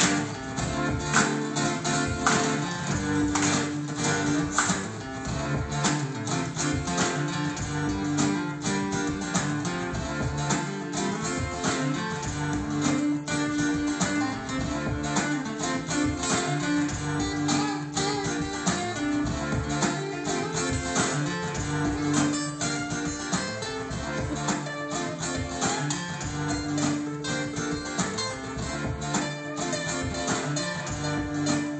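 Acoustic guitar played live: a continuous instrumental passage of rapid, even strokes and ringing chords, with no singing.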